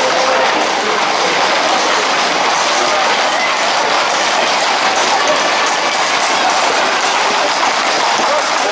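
Hooves of a tight pack of Camargue horses and bulls clattering on a paved street at a run, a steady, continuous din, mixed with the shouts of people running alongside.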